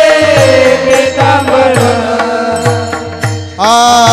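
Warkari kirtan music: a singer's held, sliding note dies away over a steady drum beat of about two to three strokes a second, with small hand cymbals (taal) playing along. Singing comes back in with a rising note near the end.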